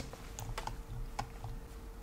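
A few faint, scattered clicks at a computer over a faint steady hum.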